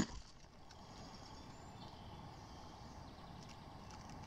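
Faint, steady outdoor background noise of quiet woodland, with no distinct event.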